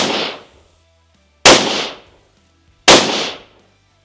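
Three sharp, loud bangs about a second and a half apart, each dying away within about half a second.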